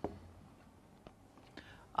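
A single sharp tap of a marker on a whiteboard at the very start, then faint room tone, with a soft breath drawn in just before speech resumes.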